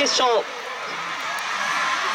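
A male announcer finishes a word, then a steady wash of stadium crowd noise from the stands that grows slowly louder as the hurdlers race.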